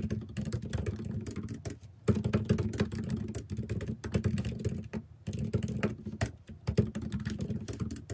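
Typing on a laptop keyboard: fast runs of key clicks, with short pauses about two and five seconds in.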